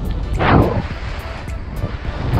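Wind buffeting the pilot's camera microphone during paraglider flight: a steady rumble with a stronger gust about half a second in.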